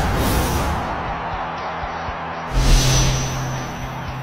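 Intro music sting with whoosh sound effects: a loud rush at the start and another about two and a half seconds in, with a low held note under the second.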